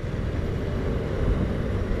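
BMW R1200RT motorcycle riding along: a steady rush of wind and engine noise.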